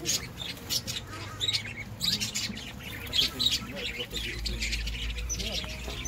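Many birds chirping and squawking at once, quick overlapping high calls with no pause, with a low rumble joining in about four seconds in.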